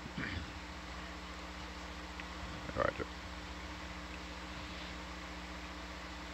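Steady low electrical hum with faint hiss on the open microphone feed, with one short vocal sound about three seconds in.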